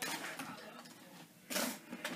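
Two short rustling scrapes of objects being handled, one at the start and one about a second and a half in.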